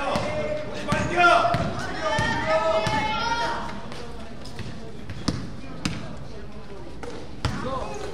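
A basketball bouncing on the gym floor during play, with sharp single bounces about five seconds in and again near the end, while voices carry through the hall in the first few seconds.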